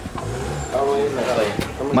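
Several people talking in the background, the words indistinct, over a low steady rumble.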